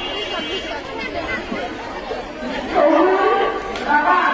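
Many young girls' voices chattering at once, overlapping without clear words; a louder voice cuts in near the end.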